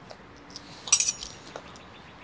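Metal forks clinking: a quick cluster of two or three sharp clinks with a brief high ring about a second in.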